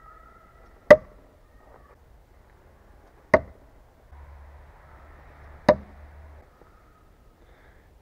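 A heavy Cold Steel Perfect Balance Thrower throwing knife striking a frozen wooden log target three times. Each hit is a sharp knock, about two and a half seconds apart.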